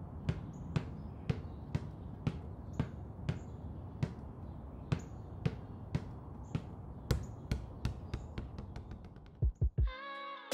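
Basketball dribbled on asphalt, bouncing about twice a second, the bounces quickening into rapid dribbles near the end. A few deep thumps close the passage.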